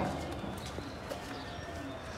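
The metal peephole flap of a corrugated sheet-metal gate has just banged shut, and its clang fades out in the first half second. After that only faint outdoor background remains, with a few small ticks.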